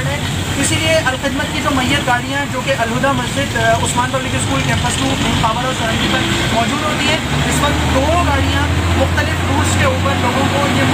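A bus running as it drives, heard from inside the cabin under passengers' voices, with a steady low engine drone that strengthens about seven seconds in.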